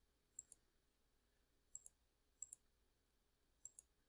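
Computer mouse clicking: four quick double-clicks spread over a few seconds, from repeated attempts to bring up a drawing pencil tool that isn't appearing.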